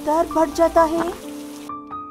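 Rain sound effect with background music, under a voice for about the first second. The rain cuts off suddenly near the end, leaving the music's held notes.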